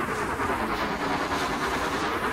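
A hissing wash of noise swept up and down in pitch, a swirling flanger-like effect, within an electronic music mix.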